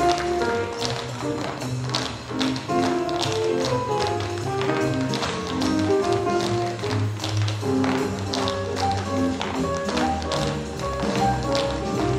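A group of tap dancers' shoes clicking on a stage floor in quick rhythmic patterns over recorded swing-style music.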